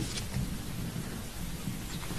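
Steady hiss of background room noise with a faint low rumble and murmur.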